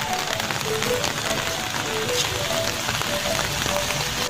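Steady rain falling on a wet paved lot, an even hiss of water, with light background music picking out a melody of short notes over it.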